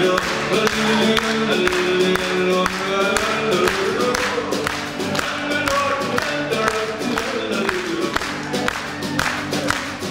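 A live folk band playing: acoustic guitar, electric guitar and keyboard together, continuing without a break.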